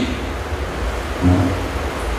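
Steady room noise picked up through the lecture hall's microphone: an even hiss over a low hum, with one short low sound about halfway through.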